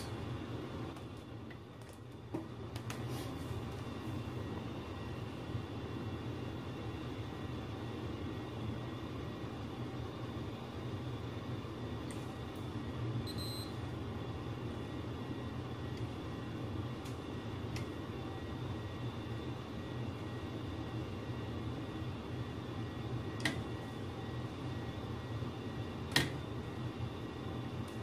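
Steady noise of a running furnace with a low hum under it. There are a few faint clicks from handling tools, and a brief high beep about halfway through.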